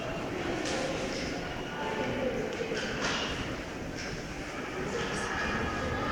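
Crinkling and rustling of shredded plastic snack wrappers being grabbed by the handful and pushed into a cloth pillow casing, with a few sharper crackles. Faint voices in the background.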